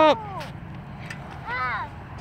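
Mostly voices: a called-out "up!" at the start and a short wordless voice sound a little after halfway, over a steady low background rumble.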